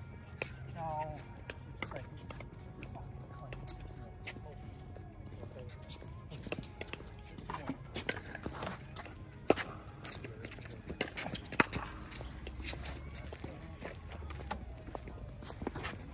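Scattered sharp pocks of plastic pickleballs against paddles and the hard court, two louder ones about nine and a half and eleven and a half seconds in, over faint voices.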